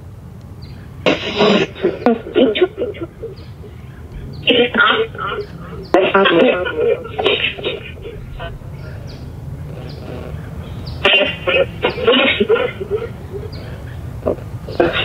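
Choppy, voice-like fragments coming in three short spells from a modified amplifier speaker running a ghost-box (spirit box) program, over a steady low hum.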